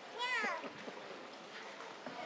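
A single short, high-pitched shout in a girl's voice that falls in pitch, just after the start, over the low hum of a gym.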